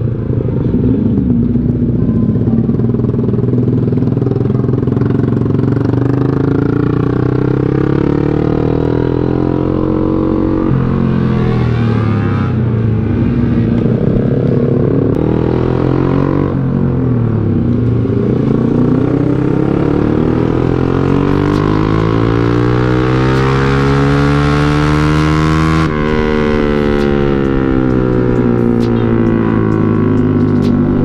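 A small underbone motorcycle's engine heard from the rider's seat while riding, its pitch rising and falling with the throttle. A long climb in revs in the second half ends abruptly.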